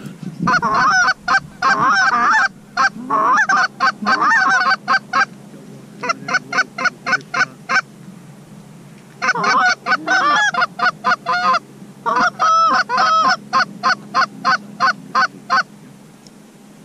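Canada goose calling on hand-held goose calls: loud, rapid clucks and honks in three runs with short pauses between them, working a single incoming goose toward the decoys.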